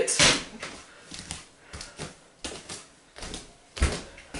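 Small hard toy cars being handled off-camera: scattered light clicks and knocks, with a louder knock near the end and a brief rush of noise at the very start.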